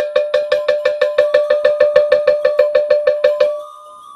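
A metal bell struck in a fast, even run, about six strikes a second at one steady pitch, stopping about three and a half seconds in.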